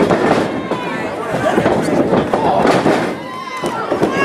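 Wrestling crowd shouting and cheering over sharp slaps and thuds as wrestlers' strikes and bodies land on the ring.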